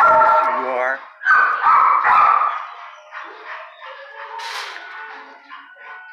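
A dog howling: two long, wavering calls in the first two and a half seconds, followed by fainter sounds.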